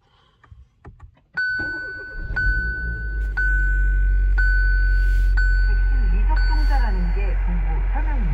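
Kia Seltos 1.6-litre turbo petrol engine starting, then running at a steady idle with a low hum. Over it a warning chime in the instrument cluster sounds once a second, about six times.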